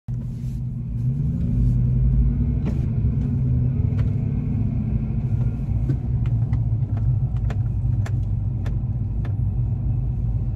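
A car engine idling, heard from inside the cabin as a steady low hum whose pitch steps up slightly about a second in. Short clicks and taps are scattered over it.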